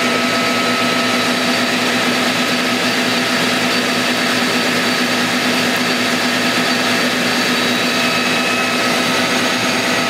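CNC lathe running steadily, its spindle turning an aluminium rod while the tool cuts under flood coolant: an even machine hum and whine with a few fixed tones that holds without change.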